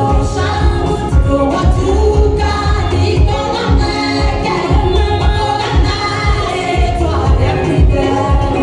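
Women singing into microphones over amplified music with a steady bass beat.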